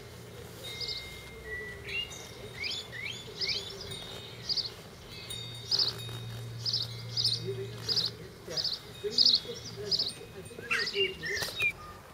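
Birds chirping outdoors, short high chirps repeating about twice a second with a few falling notes early on, over a steady low hum.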